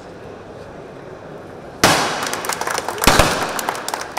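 A confetti cannon goes off with a sudden bang about two seconds in, followed by a crowd clapping.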